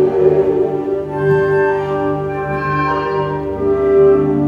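Orchestral music with long held notes.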